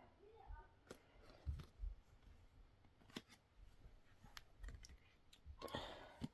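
Mostly quiet, with a few faint, sharp clicks and taps of tarot cards being handled and set down on a board's ledge.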